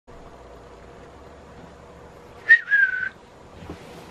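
Faint room hum, then about two and a half seconds in a click and a single short, high whistle-like squeak lasting about half a second, dipping slightly in pitch.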